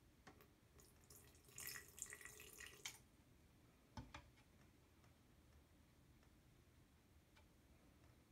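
Faint trickle of urine poured from a cup onto baking soda in a glass, lasting about a second and a half, with no fizzing from the baking soda. A single faint knock follows about four seconds in.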